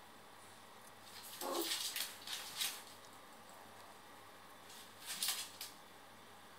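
A small dog snuffling with its nose against a tiled floor in two short spells of rapid hissy sniffs, with a brief falling whine about one and a half seconds in.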